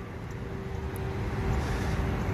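Outdoor road-traffic noise with a steady low hum, growing louder over the two seconds as a vehicle approaches.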